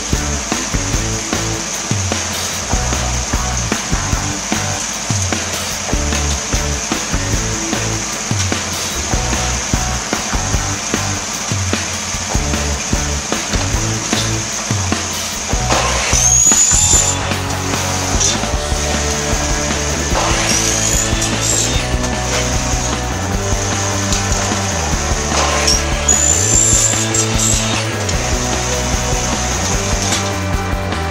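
Maktec compound miter saw making three short angled cuts through aluminium frame profile: the first about halfway through, then two more a few seconds apart, the blade's whine rising and falling with each cut. Background music plays throughout.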